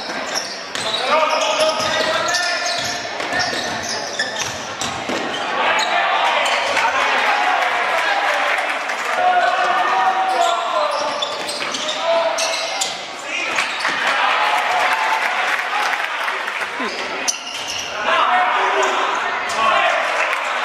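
Basketball game in a gym: shouting voices of players and spectators carry on throughout, with the ball bouncing on the wooden court among them.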